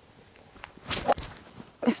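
A golf driver strikes a teed-up ball, one sharp click about a second in. The golfer calls the shot a mis-hit.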